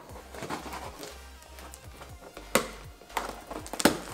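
Quiet background music, with three sharp clicks and scrapes from a knife cutting the packing tape on a cardboard box in the second half.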